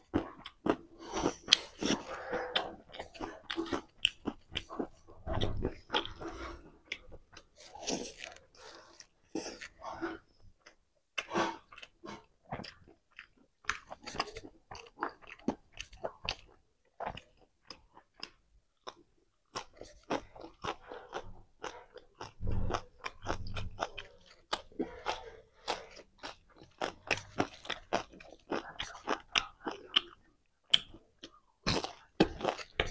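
Close-miked mouth sounds of eating fried pork, rice and raw leafy greens: irregular chewing and crunching.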